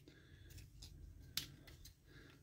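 Faint plastic clicks from a Transformers Studio Series 86 Jazz action figure as its legs are pressed together, with one sharper click about one and a half seconds in.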